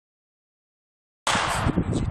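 Silence for the first second or so, then wind noise on the microphone starts abruptly: a brief hiss followed by uneven low rumble.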